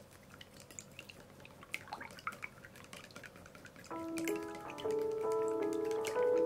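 Chopsticks beating raw eggs in a ceramic bowl: quick, light clicks and taps against the bowl, with background music coming in about two-thirds of the way through and getting louder.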